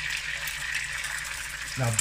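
Two eggs frying in hot vegetable oil in a nonstick pan, a steady sizzle. The pan is hot enough to set the whites quickly.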